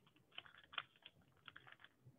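Paper being folded and creased by hand: faint, irregular crackles.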